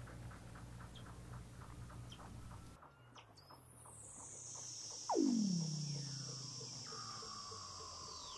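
Seal calls: a long whistle falling steeply from high to low pitch about five seconds in, the loudest thing here, over a steady high tone, with faint rapid clicking, about five a second, in the first three seconds.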